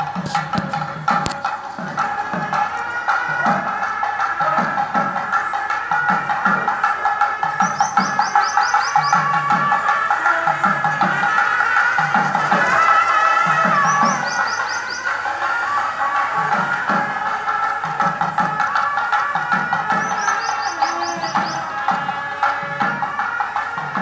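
Gangireddu street music: a reed pipe (sannai) plays a wavering melody over a steady drone, with a drum beating a regular pulse of about three beats every two seconds.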